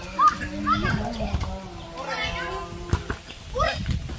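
Boys shouting and calling out to each other while playing football, with a few sharp knocks among the voices; the loudest knock comes right at the start.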